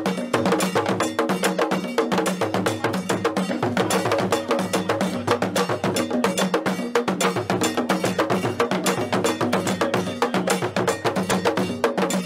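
Traditional Akan drum ensemble playing a fast, dense rhythm with sticks on peg-tensioned drums.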